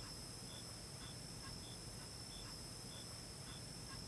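Faint night-time insect chorus: a steady high drone with a short, high chirp repeating about every two-thirds of a second.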